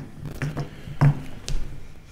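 A lull in a small meeting room: a few faint, brief vocal sounds and a single light tap about one and a half seconds in.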